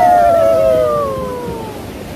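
Rafters' long drawn-out "wuuuh" whoops, sliding down in pitch and fading out shortly before the end, over the rush of whitewater around the raft.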